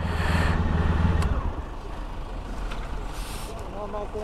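Motorcycle engine idling, a steady low rumble that drops away a little over a second in, with a short hiss at the start.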